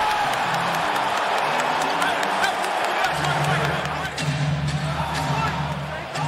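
Basketball arena crowd noise, with music with a deep bass coming in about halfway through.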